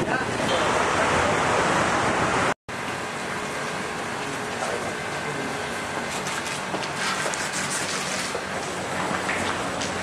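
Loud wind noise buffeting the camera microphone, which cuts off suddenly a couple of seconds in. It is followed by a quieter murmur of indistinct voices and movement from a group of people.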